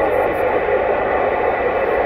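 Static hiss from a President Lincoln II+ radio's speaker on 27.085 MHz (CB channel 11), steady and loud, with a faint steady high whistle running through it.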